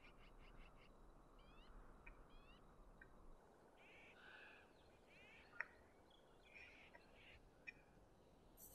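Very faint outdoor desert ambience: a low hiss with short rising bird chirps now and then, and one sharp click a little past halfway.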